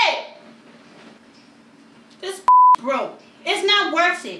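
A short, loud beep at one steady pitch, about two and a half seconds in, laid over the sound track as a censor bleep covering a swear word. Around it come short bursts of a woman's exclaiming voice.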